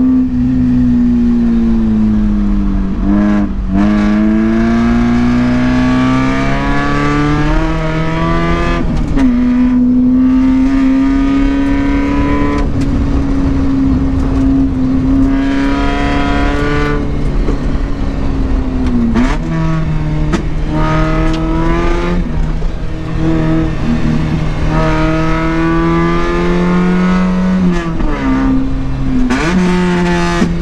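Mazda Miata's 1.6-litre four-cylinder engine heard from inside the cabin under hard driving, its pitch climbing and falling again and again as the driver accelerates, lifts and shifts gears, with steady tyre and road noise underneath.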